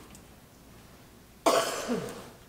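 A single cough, sudden and close to the microphone, about one and a half seconds in.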